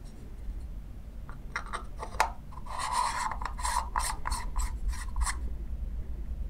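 Threaded parts of an adapted projector lens being screwed together by hand. A sharp click about two seconds in is followed by a run of short rasping strokes, about four a second, as the threads are turned.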